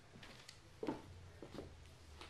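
Quiet room tone with a steady low hum and a few faint rustles and knocks, with a short 'uh' about a second in.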